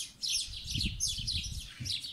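Small songbirds chirping: a quick, continuous series of short, high, falling chirps, several a second.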